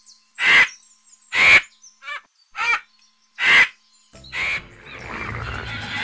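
Vulture calling: about five short, harsh, hissing calls roughly a second apart. Background music fades in near the end.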